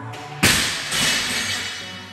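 A loaded barbell with bumper plates dropped from overhead onto rubber gym flooring: one loud crash about half a second in, a smaller bounce just after, then a fading rattle, over background music.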